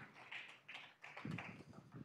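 A few faint, irregular taps and knocks, as applause dies away.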